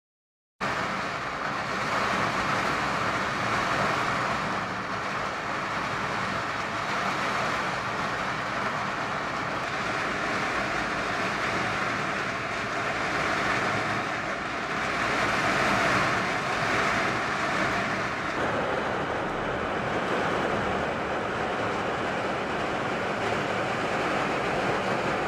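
Rain falling in gusty wind: a steady hiss that swells and eases, with wind buffeting low down. It starts abruptly just after the start.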